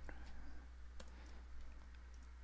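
A few faint, isolated clicks of a computer keyboard and mouse while query text is selected and deleted, the clearest about a second in, over a steady low electrical hum.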